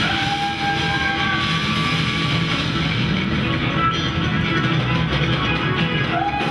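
A live rock band playing: electric guitars over bass and drums, with long held lead notes, one sliding up into pitch near the start.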